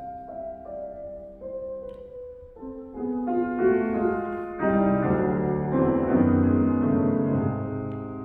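Solo concert grand piano playing classical music: a quiet line of single notes stepping downward, then fuller, louder chords building from about three seconds in.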